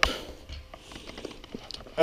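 Quiet handling of a toy quadcopter and its plastic remote controller: a sharp click at the start, then soft handling noise with a few faint light ticks.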